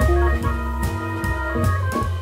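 Live jazz with the organ out front: held organ chords over a bass line that the organist also plays, with drums and cymbals keeping time. The saxophone is silent.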